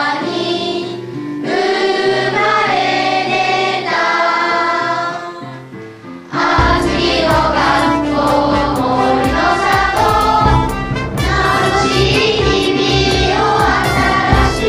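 A group of children singing a song together. About six and a half seconds in, the singing gives way to louder music with a bass line and a regular beat.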